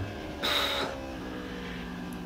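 Faint, steady engine note of a racing motorcycle on track, dropping to a lower pitch a little after a second in. A short hissing noise sounds about half a second in.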